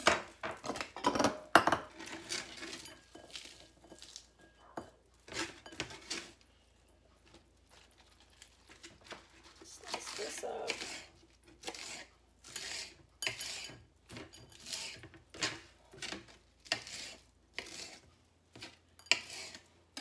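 A kitchen knife slicing through a head of iceberg lettuce and knocking on a cutting board in quick, irregular strokes. The strokes thin out for a few seconds about six seconds in, then resume at one or two a second.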